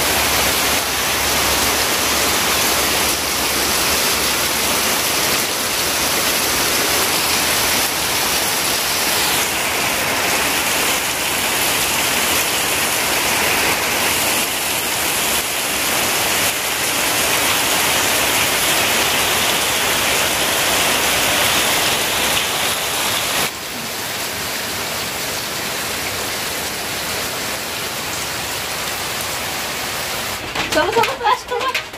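Heavy rain pouring steadily onto bare earth, puddles and leaves: a dense, even hiss. Its tone shifts abruptly about ten seconds in and again after about twenty-three seconds.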